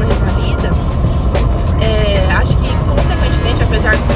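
Steady engine and road rumble inside a moving car's cabin, under a woman talking and background music.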